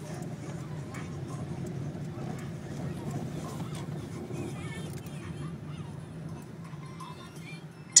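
Steady low drone of a car's engine and tyres heard inside the cabin while driving slowly.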